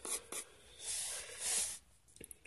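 Pencil lead drawing on paper: a few short clicks, then two longer scratchy strokes across the sheet, one about a second in and one near the end.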